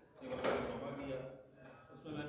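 A man speaking into a handheld microphone, with a short, loud, noisy burst about half a second in.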